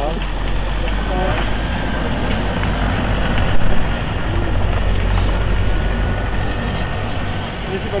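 Wind buffeting the microphone outdoors, a steady low rumble, with faint voices talking in the background.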